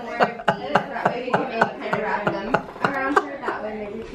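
Rapid, regular tapping or clicking, about four taps a second, steady through the whole stretch.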